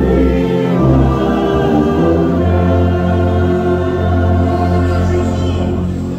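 A large congregation singing a hymn with an orchestra of strings and brass. Partway through they settle on one long held chord, which stops near the end.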